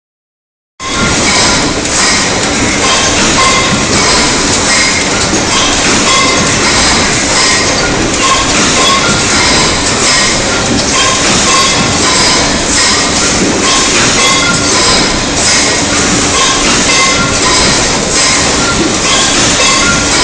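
Automatic flow-wrap packaging machine running, a loud, continuous mechanical clatter with repeated clacks as its conveyor feeds plastic bowls into the film and seals them. It starts abruptly about a second in.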